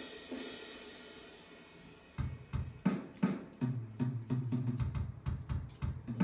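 Electronic drum-kit sounds from Logic Pro, triggered by Aeroband PocketDrum motion-sensing sticks and heard through studio monitors. A cymbal crash rings away over about two seconds, then a quick run of drum hits follows.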